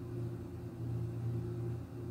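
A steady, low-pitched hum, like a fan or appliance motor running in the room, with no other distinct sounds.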